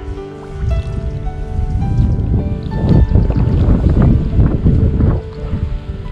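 Water splashing and churning as a hooked barbel thrashes at the surface while it is drawn into a landing net, loudest in the middle seconds and dying away near the end, over background music with long held notes.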